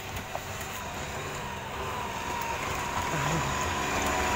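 Engine of a small utility truck labouring up a rough dirt road, growing steadily louder as it approaches and passes close by, with a steady high whine over the engine.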